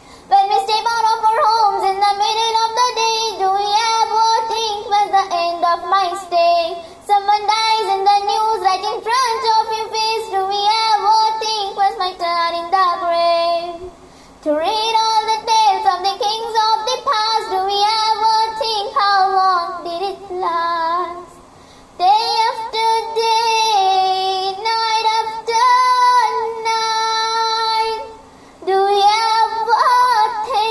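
A girl singing a devotional song solo, in long sustained phrases with a short breath about every seven seconds.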